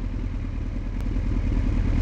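Motorcycle engine running at a steady speed, a continuous low rumble.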